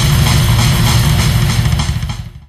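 Instrumental heavy metal, a dense closing passage with a heavy, rapid low end, beginning to fade near the end.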